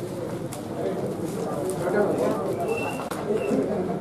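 Several people's voices talking over one another in the background, with no single clear speaker. A brief thin high chirp sounds about three seconds in.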